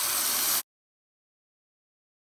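Tap water running steadily over a hand into a sink. It cuts off abruptly about half a second in, and the rest is dead silence.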